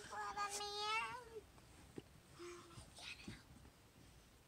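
A child's voice making a wordless sound on one held note for about a second and a half, followed by a faint click and light handling noise.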